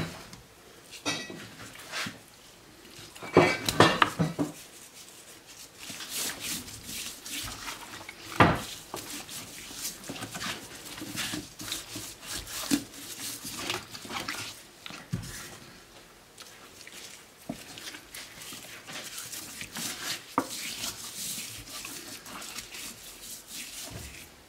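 Gloved hands rubbing and patting seasoning into the skin of a raw whole duck on a wooden cutting board: irregular soft rubbing, patting and squishing, with one sharper slap about eight seconds in. A brief louder voice-like sound comes about three to four seconds in.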